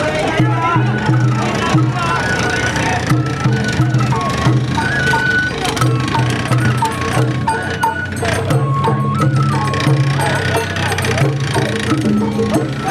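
Sawara-bayashi festival music from the musicians on the float: a high bamboo flute playing held notes that step in pitch, over drums, with men's shouts and calls from the crew turning the float.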